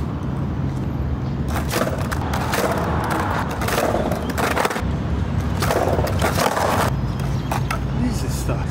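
Skateboard on stone paving: the wheels roll in several short stretches, and the board clacks sharply a few times, over a steady low hum.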